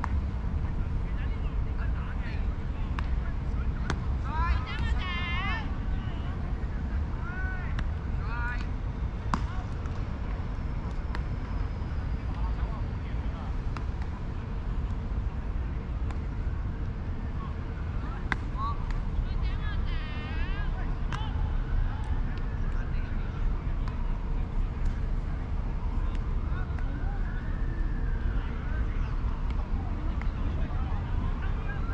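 Distant shouts and calls from players across the field, coming in short bursts about four to six seconds in and again around eight and twenty seconds in. They sit over a steady low rumble.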